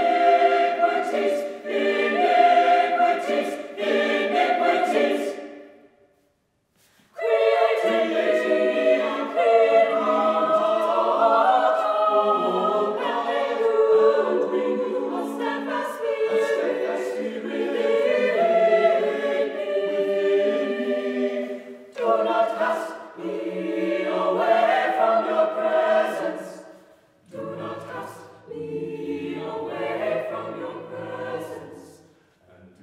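Mixed-voice choir singing a cappella in phrases. The singing breaks off for about a second some six seconds in, then resumes, and lower voices come in near the end.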